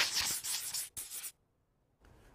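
Scribbling sound effect of a marker on paper: a rough scratching stroke lasting about a second, then a second short stroke. It cuts off suddenly to silence.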